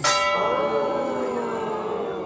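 Small brass bar bell rung by pulling its rope: a sharp loud strike at the start, then a bright, many-toned ring that fades slowly.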